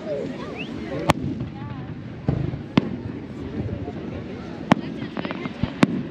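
Aerial firework shells bursting: about four sharp bangs spaced a second or two apart, with a brief spatter of smaller pops between them, over the steady chatter of a beach crowd.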